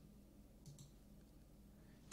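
Near silence: room tone, with one faint short click about two-thirds of a second in, a computer mouse click selecting a date.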